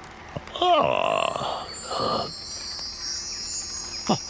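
A man's comic wordless vocal exclamation, falling in pitch about half a second in, with a shorter second sound at about two seconds. A high, shimmering, chime-like cartoon sound effect twinkles over the second half.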